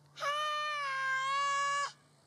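A child's single long, drawn-out call, held at a high, nearly steady pitch for about a second and a half, shouted out loud to raise an echo in the mountains.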